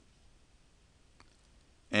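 Near silence: quiet room tone, with a single faint click about a second in and a man's voice starting at the very end.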